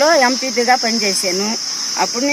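A woman talking in Telugu over a steady, high-pitched drone of insects that never lets up.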